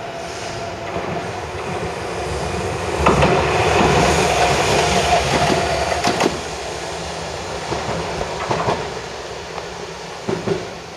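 A purple single-car Keifuku Randen (Kitano Line) train passing close by: its rumble builds, is loudest for about three seconds in the middle with a steady whine and a few sharp wheel clacks over the rail joints, then fades as it moves away.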